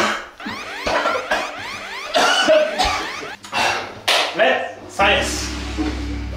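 A man's voice speaking and exclaiming over edited sound effects: a run of rising swept tones during the first two seconds, and a low steady music bed near the end.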